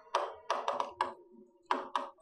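Stylus tapping and knocking against an interactive display screen while handwriting: about six short, sharp taps at uneven intervals.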